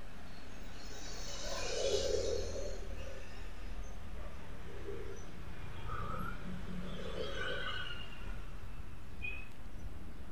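Low steady background hum with faint, distant bird calls a few times, the clearest about two seconds in.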